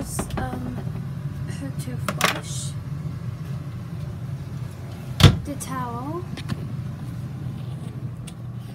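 Small bathroom cabinet doors clicking, then one sharp knock about five seconds in as the medicine cabinet door is banged shut, over a steady low hum.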